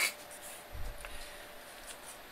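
Faint rubbing and handling noise from a handheld phone being moved, over low hiss, with a soft low thump just under a second in and a faint click.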